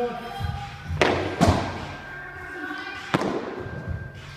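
Three sharp thuds of weight plates landing on a rubber gym floor: about a second in, again half a second later, and once more near three seconds in.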